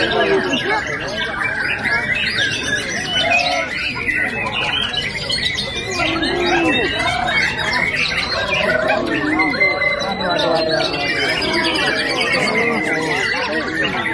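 Many caged white-rumped shamas (murai batu) singing at once in competition: a dense, unbroken chorus of overlapping whistles, trills and harsh calls, with one long rising whistle about ten seconds in.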